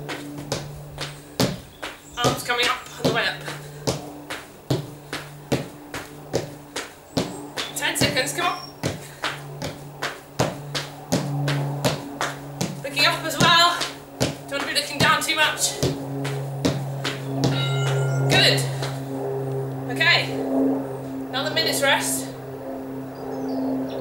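Feet repeatedly landing on a plastic aerobic step platform during box jumps, a thud about twice a second for the first half or so, then only a few scattered thuds.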